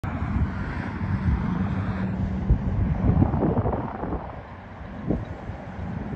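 Low rumble of distant diesel freight locomotives approaching, with a steady low hum for a second or so near the start. Wind buffets the microphone in gusts.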